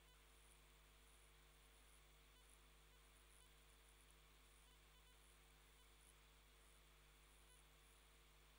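Near silence: room tone with a faint steady electrical hum and hiss.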